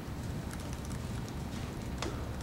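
A few light footsteps on a hard floor over a steady low hum of room noise.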